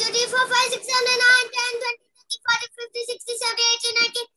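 A child singing a song alone, in held notes with a short pause about halfway through, heard over a video call.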